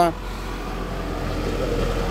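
Low, steady rumble of a passing motor vehicle, growing a little louder toward the end.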